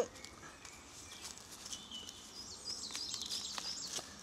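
A bird chirping and twittering faintly in the background, starting a little past a second in and going on until near the end, with a few faint clicks over quiet outdoor ambience.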